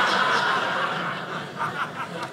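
Audience laughing in response to a punchline, fading toward the end.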